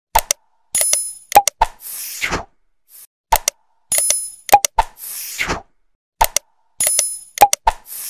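Sound effects of a like-and-subscribe animation, repeated three times about every three seconds: two mouse clicks, a bright bell chime, two more clicks, then a short whoosh.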